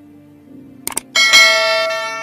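Soft background music with a subscribe-button sound effect: two quick mouse clicks just before a second in, then a bright bell chime that rings on and slowly fades.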